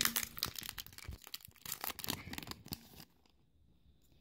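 Foil wrapper of a Pokémon booster pack crinkling and tearing as it is torn open and the cards are worked out, a dense run of crackles that stops about three seconds in.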